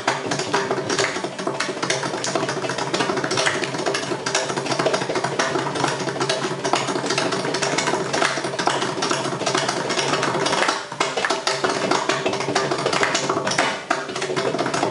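Mridangam solo in a thani avartanam: a fast, dense run of strokes on the two-headed barrel drum, with its tuned head ringing at a steady pitch. There is a brief break about eleven seconds in and another just before the end.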